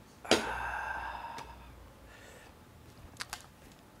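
A man's voiced, breathy 'ahh' of satisfaction right after a swig of beer, starting suddenly and fading over about a second. Two or three short clicks follow near the end.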